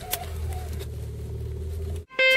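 Steady low drone of a car driving, heard from inside the cabin, with a faint click just after the start.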